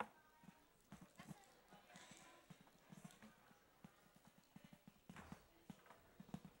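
Faint, irregular footsteps and shuffling across the floor. A single sharper wooden knock comes right at the start as the wooden lectern is picked up and carried.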